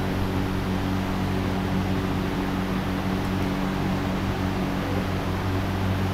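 Steady room noise: a low, even hum under a constant hiss, with no other event.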